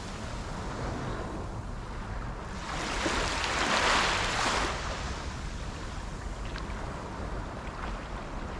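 Small waves washing onto a sandy shore. One hiss of surf swells up and peaks about four seconds in, then fades, over a steady low rumble.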